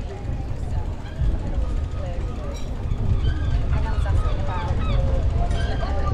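A steady low rumble of wind on the microphone while cycling, with snatches of people's voices nearby, thickest in the second half.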